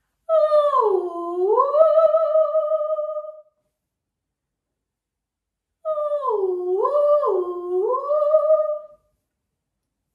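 A woman's voice sliding on a ghostly 'ooh' as a vocal warm-up, in two phrases. The first swoops down and back up, then holds. The second, after a pause of about two seconds, swoops down and up twice before holding.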